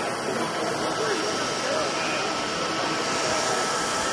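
Steady rushing air noise from a running 3D printer's cooling fans close up, with a faint steady whine and distant voices behind.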